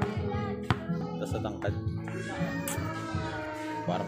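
Background music with steady held notes and voices over it, and a single sharp knock a little under a second in.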